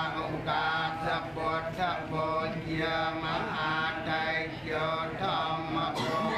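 A group of voices chanting Buddhist prayers together in a steady recitation, phrase after phrase with short breaks, over a faint steady low hum.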